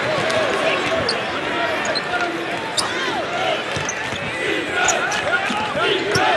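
Basketball gym ambience: sneakers squeaking on the court in many short chirps, a ball bouncing now and then, and a murmur of crowd voices.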